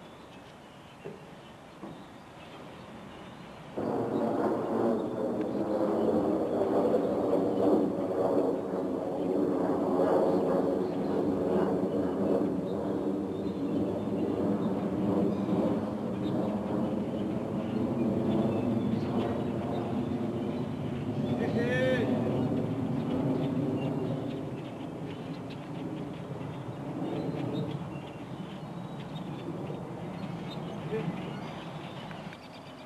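A man's voice making wordless, pitched sounds that hold and shift slowly, starting suddenly about four seconds in and tailing off in the last few seconds.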